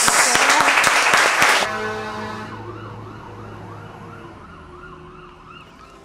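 Audience clapping and laughing, cut off abruptly under two seconds in; then a fire truck siren yelping in quick rising-and-falling wails, about three a second, over a low vehicle hum, fading away as it passes.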